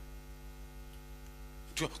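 Steady electrical mains hum with a ladder of even overtones, carried through the microphone and sound system. A man's voice comes back in near the end.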